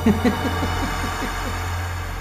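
A man chuckling under his breath: a run of short falling 'heh' sounds, about six a second, fading out after about a second and a half, over a steady low musical drone.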